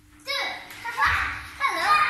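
A young child's high voice vocalizing in short phrases with rising and falling pitch, starting about a quarter second in.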